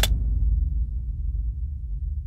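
A sharp crack at the start over a deep, low boom that trails off slowly: an edited impact-and-rumble transition effect.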